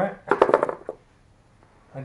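A man's voice making a short wordless sound, then a rough vocal burst lasting about half a second, followed by about a second of quiet.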